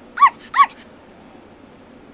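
Akita giving two short, high yelps in quick succession about a quarter and half a second in, each rising then falling in pitch.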